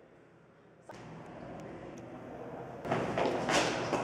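A sudden thump about a second in, then louder knocks and clatter near the end, with a woman's exclamation.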